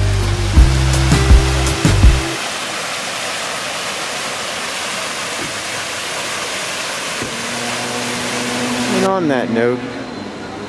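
Water from a tiered fountain cascading and splashing steadily into its pool, starting about two seconds in after background music stops. About a second before the end the water sound cuts off, followed by a brief sound whose pitch swoops down and up.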